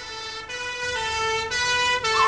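Two-tone police siren, switching between a low and a high note about every half second.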